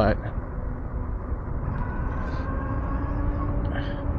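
Super73 RX e-bike's electric motor whining at high speed, several thin steady tones over a constant low rumble of wind on the microphone and road noise.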